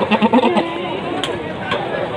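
A goat bleating once, a short quavering bleat in the first half second, over steady crowd chatter.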